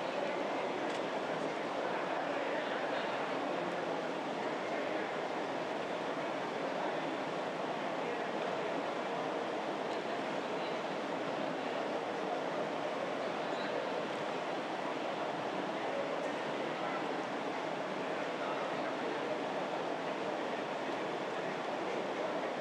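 Steady, indistinct chatter of many people talking at once in a large legislative chamber, with no single voice standing out.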